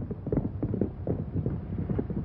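Horses galloping, their hooves beating in a rapid, uneven drumming.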